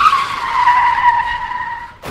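Car tyres screeching in a skid, a sound effect: one long, high squeal that slides slightly down in pitch over a rushing noise, the skid before a crash.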